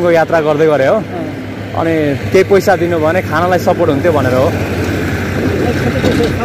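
Mostly conversation between men, with a steady low vehicle engine hum under it that comes to the fore in the last second or so as the talk fades.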